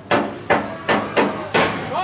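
A rhythm of five sharp percussive strikes in about two seconds, evenly spaced between lines of crowd chanting.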